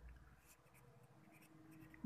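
Near silence with faint writing sounds.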